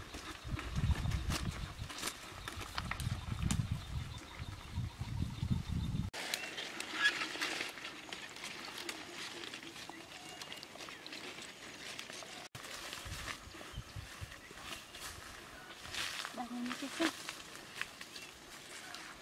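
Rustling and snapping of leafy plants and footsteps on dry ground, made up of many short rustles and clicks. A low rumble runs under the first six seconds.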